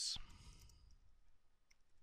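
A few faint computer keyboard keystrokes, light clicks near the end, just after the tail of a spoken word.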